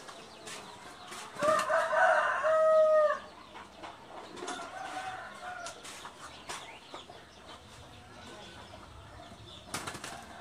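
A rooster crowing once, a loud call of about two seconds starting a little over a second in, followed by a fainter call a couple of seconds later. Scattered light clicks in the background.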